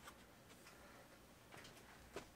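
Near silence: room tone, with a few faint ticks at the start and again near the end.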